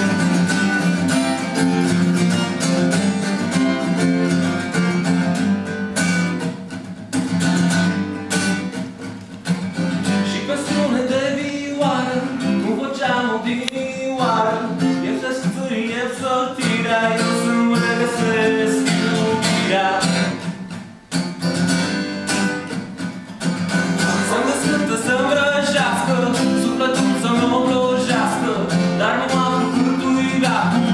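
A man singing live to his own guitar, strumming chords throughout, with a short break in the playing about two-thirds of the way through.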